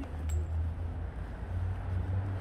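Low, steady outdoor rumble of a city street, with one faint click about a third of a second in.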